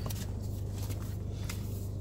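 Faint rustling and a few soft clicks of a leather padfolio being picked up and handled, over a steady low hum inside a car.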